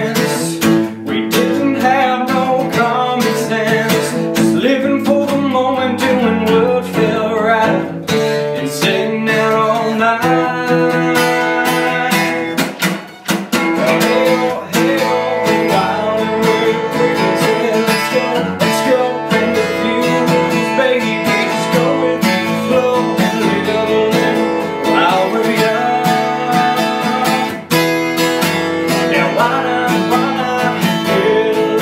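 Steel-string acoustic guitar strummed in a steady rhythm, with a man singing over it; the playing drops away briefly about thirteen seconds in.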